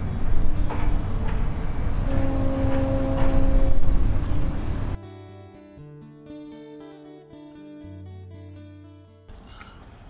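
Wind rumbling on the microphone for about half the time, with a steady tone in it. Then a sudden cut to quieter instrumental background music with long held notes.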